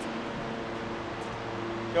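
Steady mechanical hum of running machinery, with several held low tones over an even hiss.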